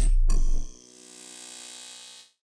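Logo sting sound effect: a deep rumble fades out in the first half-second, followed by a quieter, shimmering ringing tone that dies away.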